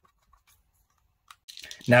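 Near silence, broken by a single faint click about a second and a half in and a few fainter ticks; a voice begins just at the end.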